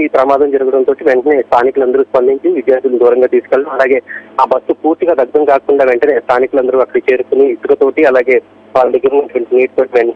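Speech only: a man reporting in Telugu over a telephone line, the voice narrow and thin.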